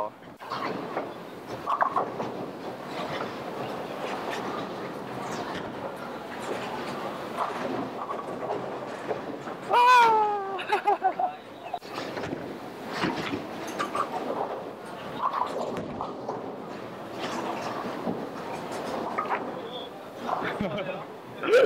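Bowling alley din: balls rolling down the wooden lanes in a steady rumble, with scattered knocks and clatter of pins being struck. About halfway through, a voice calls out loudly, falling in pitch.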